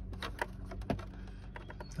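Scattered light metallic clicks of a small open-end wrench being fitted and worked on a nut while tightening the heater valve in place, over a low steady hum.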